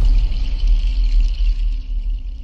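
Sound design of a TV channel logo sting: a loud, deep bass rumble under a steady high shimmer, opened by a sharp hit at the very start.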